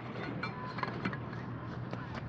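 Steady outdoor background noise with a few faint clicks and taps.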